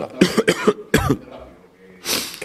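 A man coughing into his fist, a quick run of about four short coughs in the first second.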